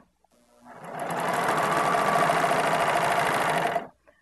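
A three-thread serger runs, stitching a rolled hem on muslin while its blade trims the fabric edge. It builds up speed over the first second, runs steadily at a fast stitch rate, then stops shortly before the end.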